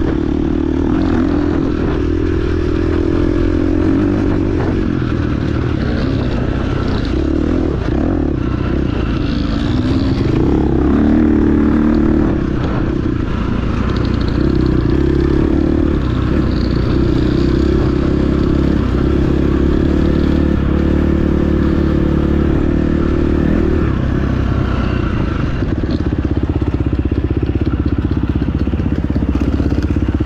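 Off-road dirt bike engine running under load from onboard the bike, its pitch rising and falling as the throttle opens and closes along a rough trail.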